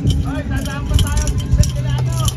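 Indistinct voices talking over a strong low rumble and a steady low hum, with faint short ticks at intervals.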